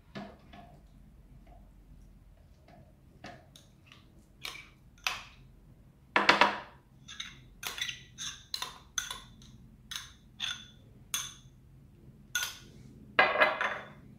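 A metal spoon clinking and scraping against a glass bowl while grated coconut is spooned out: a string of short, sharp clinks about three a second, with a longer clattering scrape near the end.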